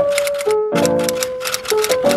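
Typing sound effect of rapid, even keystroke clicks, about eight a second with a short break about half a second in, over background music with held notes.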